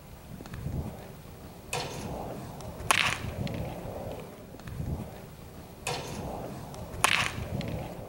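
Baseball bat hitting a pitched ball twice, about four seconds apart: two sharp, loud cracks, each about a second after a shorter, softer rushing sound. A low rumble of wind on the microphone runs underneath.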